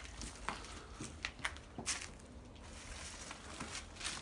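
A few scattered light clicks and taps, the sharpest about a second and a half in, over a low steady rumble.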